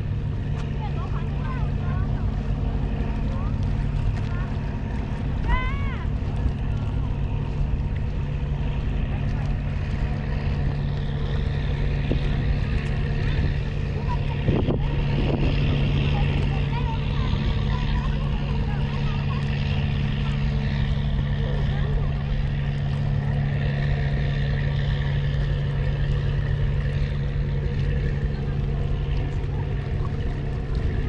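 An engine running steadily at one constant pitch, with faint voices in the background.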